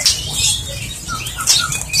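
Caged white-rumped shamas moving about: light fluttering and scuffing on the perches and bars, with a few faint short chirps.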